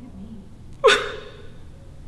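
A woman's sudden, breathy gasp about a second in, its voice dropping sharply in pitch as it breaks into a short distressed cry.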